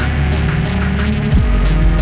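Experimental improvised jam: a distorted electric bass run through effects pedals holds low droning notes. A little past halfway it slides down into a deeper, heavier drone, while cymbal hits tick over the top.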